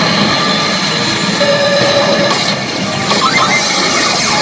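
CR Evangelion 8 pachinko machine playing its game music and electronic effect sounds during a reel spin, over the constant clatter and noise of a pachinko parlour.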